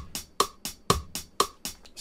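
Teenage Engineering OP-Z sequencer playing a simple beat of sampled drums: an eighth-note hi-hat at about four hits a second, a bass drum on beats one and three, and the metronome clicking on the beat.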